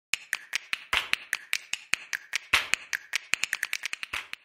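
A rapid, regular run of sharp clicks, about five a second, with louder strokes about a second in and again halfway through, coming faster toward the end.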